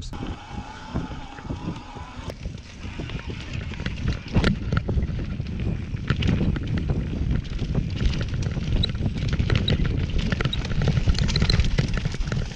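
Mountain bike riding down a rough dirt downhill trail: wind buffeting the microphone over tyre rumble, with scattered rattles and knocks from the bike over bumps. It grows louder from about four seconds in as speed builds.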